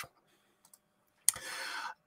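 A sharp mouth click about a second and a quarter in, then a soft intake of breath lasting about half a second, just before a man starts speaking.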